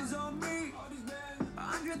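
Pop song with a sung vocal melody over instrumental backing, playing quietly in the background.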